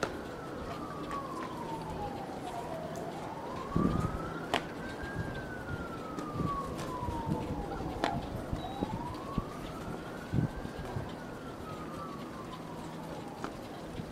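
An emergency vehicle's siren on a slow wail, its pitch climbing and falling about every five and a half seconds, over street noise with a few sharp knocks.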